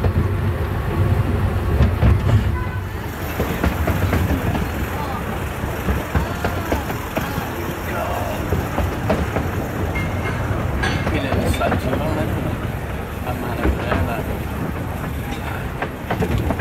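Passenger carriage of a miniature railway train running along the track: a steady low rumble of the wheels, heavier in the first couple of seconds, with the voices of passengers over it.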